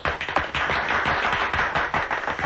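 Applause: a dense, irregular patter of hand clapping.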